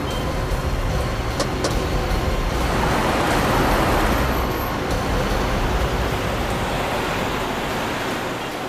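Steady engine and road noise of a moving car heard from inside the cabin, swelling for a second or so around the middle.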